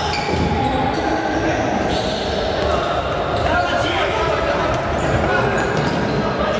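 Live sound of an indoor futsal game in a large, echoing hall: the ball thudding off feet and the wooden floor amid indistinct players' shouts.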